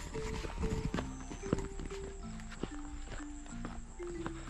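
Background music: a melody of short held notes moving up and down in steps, with light clicking percussion.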